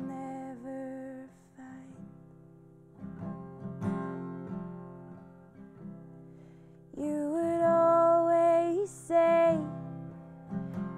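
Acoustic guitar strummed and picked in a folk song, with a woman singing held notes in the first second and again, louder, from about seven seconds in; in between the guitar plays alone and softer.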